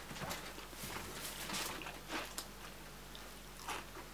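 Close-up chewing of a mouthful of hot dog and rice, irregular and soft, with a few small clicks.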